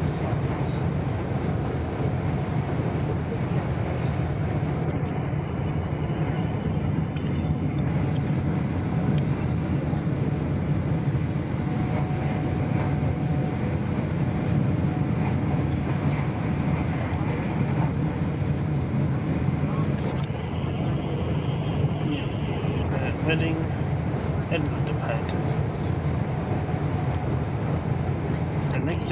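Steady running noise heard from inside a GWR Class 802 passenger carriage travelling at speed: a constant low rumble of wheels and running gear on the rails that stays even throughout.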